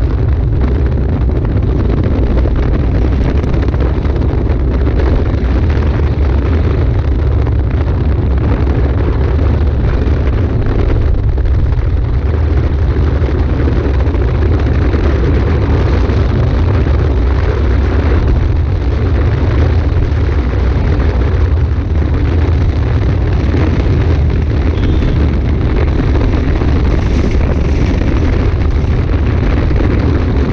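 Heavy, steady wind buffeting on the microphone of an engineless soapbox cart coasting downhill at speed, around 50 km/h, mixed with the rolling rumble of its small wheels on the asphalt.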